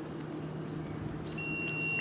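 Quiet outdoor background with a low steady hum; about one and a half seconds in, a steady high-pitched electronic tone comes on and holds, the sound of a metal detector sounding off on metal.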